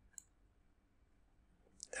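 Near silence with a single faint computer-mouse click about a fifth of a second in.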